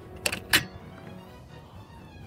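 A phone being handled inside a parked car: two sharp clicks about a quarter and half a second in, then a low steady cabin hum under faint background music.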